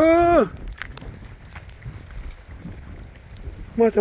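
Wind buffeting the microphone as a low, uneven rumble, with a person's voice calling out briefly at the start and again near the end.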